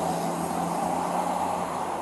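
Steady roadside vehicle noise: an even hiss with a faint low steady hum under it.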